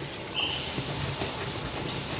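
Plastic hand citrus juicer being worked: the domed press twisted down onto the reamer cone, plastic grinding on plastic, with a brief high squeak about half a second in.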